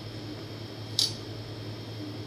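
A single sharp clink about a second in as a metal scoop takes matcha powder from a glass clip-top jar, over a steady low hum.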